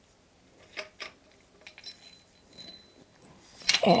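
Faint scattered clicks and small metallic clinks of a small Phillips screwdriver backing out the tiny screws of the ring around a Schmidt-Cassegrain telescope's focus shaft. A few of the ticks ring briefly and high.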